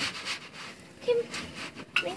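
Metal grill tongs clicking against a grill grate: a few light clinks, with one sharper clack near the end, and faint voices behind.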